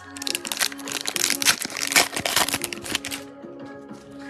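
Foil trading-card pack wrapper crinkling as it is handled and opened, a dense crackle for about three seconds that stops near the end. Steady background music runs underneath.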